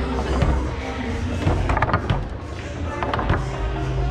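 Foosball in play: sharp clacks of the ball struck by the rod figures and hitting the table, one early, a quick cluster about a second and a half to two seconds in and another just past three seconds, over steady background music.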